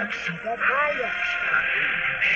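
Soundtrack of an animated cartoon trailer played through a TV speaker: character voices over background music, sounding thin and boxy.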